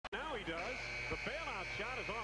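A man's voice giving television basketball commentary, with a steady high-pitched tone held under it from about half a second in.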